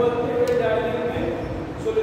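A man's voice lecturing.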